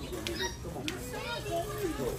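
Indistinct voices talking, with a few faint clicks over low background noise.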